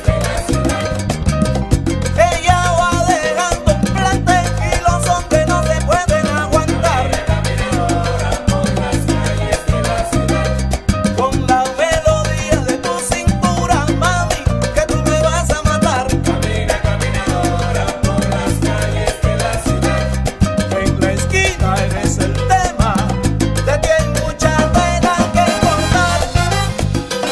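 Salsa band playing an instrumental section: bass and Latin percussion keep a steady syncopated groove under a lead melodic line.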